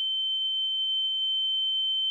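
A steady, high-pitched single tone with no other sound: the film's ringing-in-the-ears effect after a crash, standing for the stunned rider's dulled hearing.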